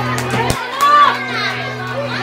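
Crowd of children chattering and calling out together, with one loud child's shout about a second in. A low steady hum under the voices stops about half a second in.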